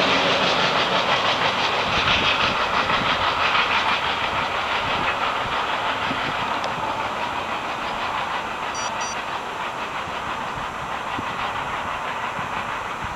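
Long freight train of autorack and intermodal cars rolling away on the rails, a steady wheel-on-rail rumble and hiss that fades slowly as the train recedes.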